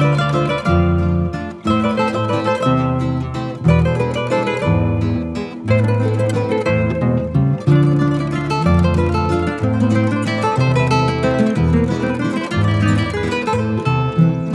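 Instrumental break in a Colombian música popular song, with no singing: a plucked acoustic guitar melody over strummed guitar and a bass line.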